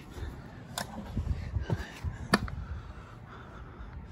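Climbing a ladder while carrying the camera: low bumps and rustle from footsteps and handling, with two sharp knocks, one about a second in and another past the halfway point.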